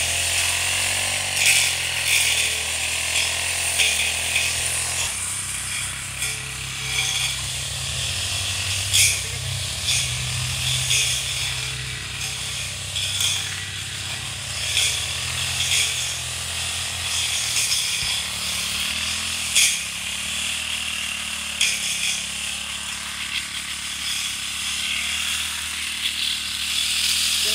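Small two-stroke engine of a brush cutter running steadily while clearing weeds, its pitch and strength wavering, with a few sharp ticks.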